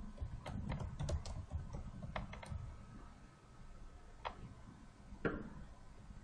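Typing on a computer keyboard: a quick run of keystrokes in the first two and a half seconds, then two single taps later on.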